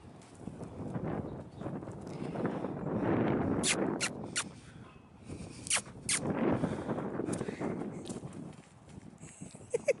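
A horse and a herding dog moving about on dirt: scuffing steps that swell and fade twice, with about half a dozen sharp clicks and knocks in the middle of the stretch.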